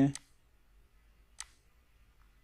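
Two single clicks of a computer mouse, one just after the start and one about a second and a half in, with faint room tone between.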